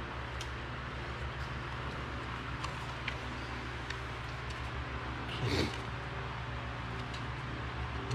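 Steady low hum with a few faint clicks, and one short rising-and-falling sound about five and a half seconds in.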